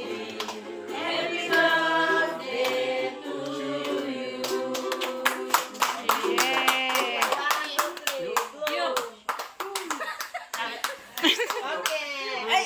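A small group of voices singing a birthday song together for the first few seconds, then breaking into fast, continuous hand clapping mixed with children's voices and chatter.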